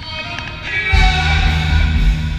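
Rock music from a band: it starts quietly, and about a second in the full band comes in loud with heavy bass and drums.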